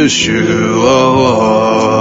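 A man singing a slow melody in long, wavering held notes over sustained backing music.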